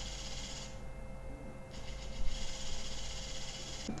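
MicroAire PAL LipoSculptor electric liposuction handpiece running, its cannula moving rapidly back and forth in a steady mechanical buzz. The sound fades briefly about a second in, comes back, then stops just before the end.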